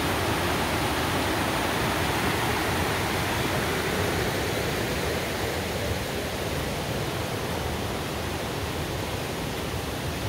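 A shallow stream rushing over rocks in a steady rush of water. It gets a little quieter from about five or six seconds in.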